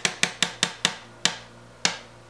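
Sharp clicking knocks from the ice-pick mechanism in a wooden shadow box being worked by hand: quick, about five a second at first, then slowing to single knocks further apart, each with a brief ringing tail.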